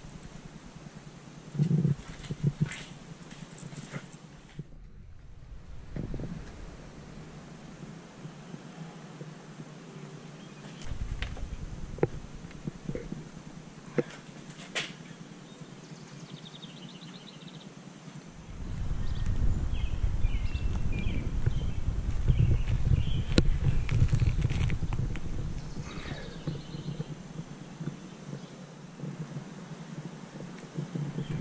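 Wind rumbling on the microphone outdoors, coming and going in gusts and strongest in the last third, with scattered sharp clicks of handling.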